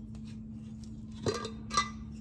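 Two light clinks about half a second apart, the second louder, as a small glass jar of ground herb is handled, over a steady low hum.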